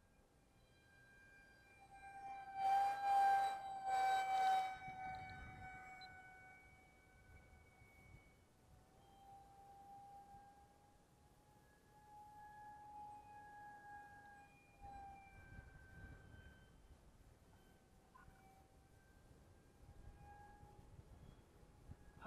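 Electric motor and propeller of a Parkflyers International SU-35 G2 RC parkjet in flight: a steady whine that drifts slowly up and down in pitch. Two loud gusts of wind buffet the microphone about three and four seconds in.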